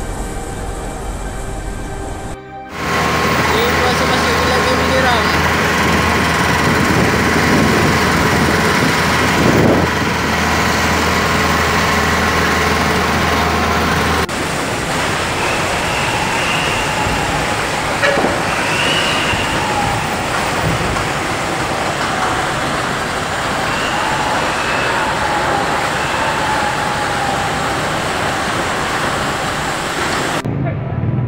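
Loud, steady rushing noise of a busy outdoor scene, with indistinct voices calling in the background. The sound changes abruptly twice, a few seconds in and about halfway through, where the footage is cut.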